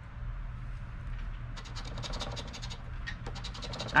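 A coin scratching the coating off a scratch-off lottery ticket in a run of quick strokes, starting about one and a half seconds in.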